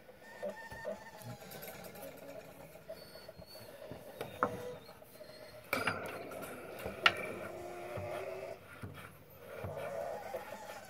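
Homemade exercise machine being worked against its 140-pound garage door spring, with creaking and squeaking from the spring and the sliding iron pipe handles. A few sharp clicks break in, the loudest about seven seconds in, where the handle bars meet.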